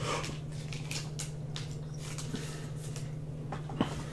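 Trading cards being handled by hand: a scatter of light clicks and rustles as the cards are shifted in the stack, then a sharper tap near the end as the stack is set down on the mat. A steady low hum runs underneath.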